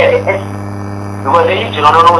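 Steady electrical hum on the recording, with a low drone and its overtone held at one pitch throughout. It is heard on its own for about a second between stretches of a man's speech.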